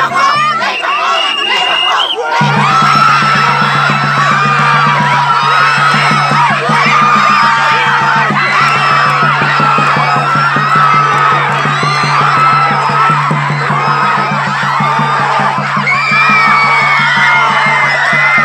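Crowd of spectators cheering, screaming and shouting encouragement during a tug-of-war pull. From about two seconds in, a rapid steady beating on a hand-held percussion instrument adds a low, held tone under the voices.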